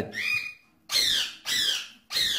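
Budgerigars calling: three short calls, the last two falling in pitch.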